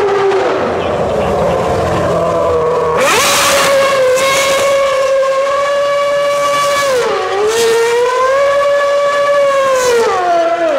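A Red Bull Formula 1 car's 2.4-litre Renault V8 is held at high, screaming revs while the car spins donuts with its rear wheels spinning. The revs climb sharply about three seconds in and stay up, with a short dip around seven seconds before rising again.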